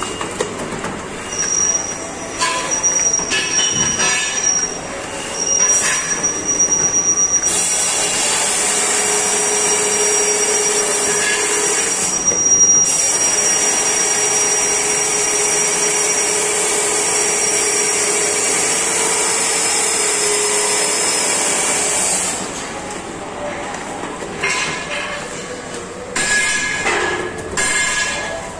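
Automatic paper dona (bowl) making machine running as its die presses foil-laminated paper into 8-inch bowls. It makes a hissing noise with a thin high-pitched tone, uneven at first, then loud and steady from about eight seconds in until about twenty-two seconds in, after which it turns uneven and quieter.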